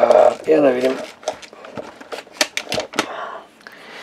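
A few spoken words, then a string of small, sharp clicks and taps as a pod vape device is handled in the fingers, with a soft hiss near the end.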